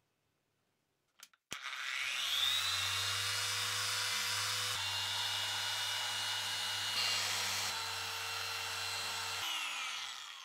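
Electric orbital polisher with a foam pad buffing a resin knife handle. After a short click, the motor starts about a second and a half in, its whine rising to speed, then runs steadily and winds down near the end.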